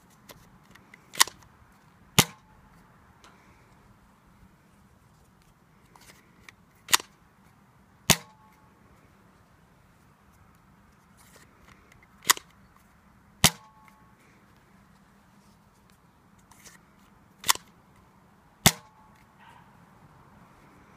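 Nerf Rebelle Wild Glam, a single-shot spring-plunger dart blaster, being primed and fired four times. Each cycle is a sharp click followed about a second later by a louder snap with a short ringing tone, with a few seconds between cycles for reloading a dart.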